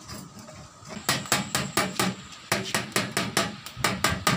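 A rapid series of sharp, clattering knocks, about four a second, starting about a second in.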